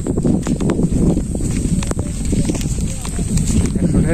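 Wind rumbling on the microphone while someone walks along a paved road, with irregular footstep taps.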